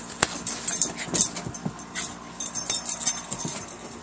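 A dog's collar tags jingling, with quick irregular clicks and scuffling, as it grabs its stuffed monkey toy and makes off with it.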